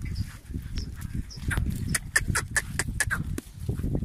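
A herd of goats moving about, with a quick run of short, sharp sounds through the middle.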